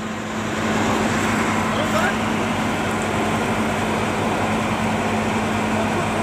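Steady hum and rush of a confined-space ventilation blower running, pushing air down the yellow flexible duct into the manhole.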